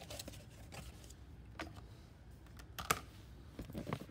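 Faint, scattered light clicks and taps of things being handled on a hard tabletop, with the sharpest click about three seconds in.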